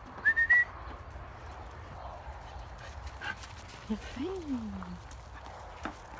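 A dog whining: a short high rising whine just after the start, then a low drawn-out whine about four seconds in that falls slowly in pitch, with faint scattered clicks between.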